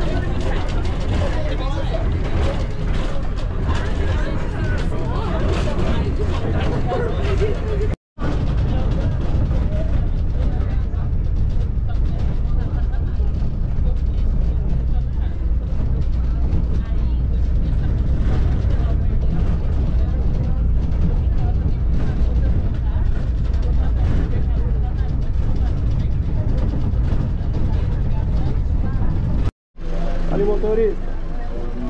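A bus in motion heard from inside: a steady low engine and road rumble that starts abruptly about 8 seconds in and runs until a cut near the end. Before it come voices mixed with outdoor noise.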